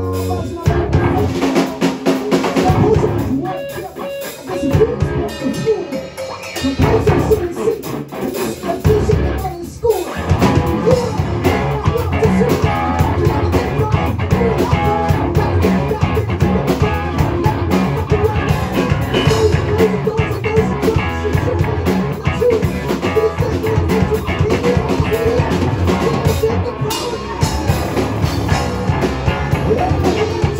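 Live rock band playing: electric bass, drum kit and electric guitar. The playing is sparser for about the first ten seconds. A falling sweep comes just before the full band plays on densely.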